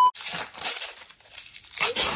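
Gift wrapping paper being torn and crumpled: a crackly rustling that fades about a second and a half in.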